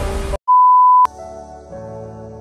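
Background music breaks off, and after a brief gap comes a single loud electronic beep: one steady pure high tone about half a second long, ending in a click. Softer, slower music then starts.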